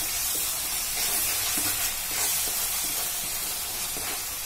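Thick onion-tomato masala paste sizzling in oil in a pan while a wooden spatula stirs it, a steady hiss with a few soft scrapes and knocks. The masala is cooked down, the oil separating at the edges.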